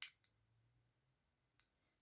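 Near silence with a sharp plastic click at the start and a faint tick near the end, from a small memory stick and USB-C adapter being handled.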